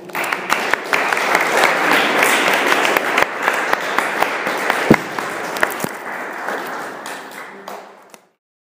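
Audience applauding at the close of a talk: it starts suddenly, holds steady for several seconds, then gradually dies down.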